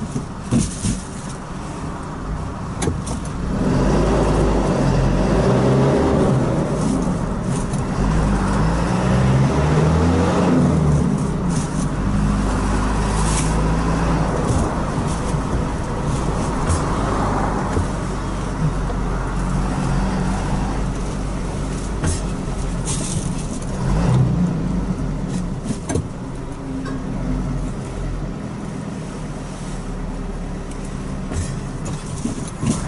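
A car driving on a road, heard from inside the cabin: engine and tyre noise throughout. The engine note rises and falls and is loudest between about 4 and 12 seconds in, with a few short clicks scattered through.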